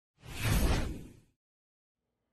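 A whoosh transition sound effect, a single swell of noise with a deep low end that rises and fades over about a second.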